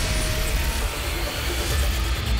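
Trailer-style soundtrack: heavy, bass-laden music mixed with an engine-like vehicle rumble.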